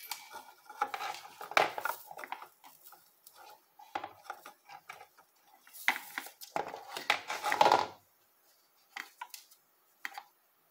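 Irregular light clinks, taps and scrapes of a soldering iron and metal tools against a computer motherboard during desoldering, busiest for about eight seconds, then only a few sparse ticks.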